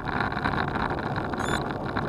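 Wind buffeting an action camera's microphone, with tyre and road rumble from a bicycle descending a mountain road at speed. It is a steady rushing noise.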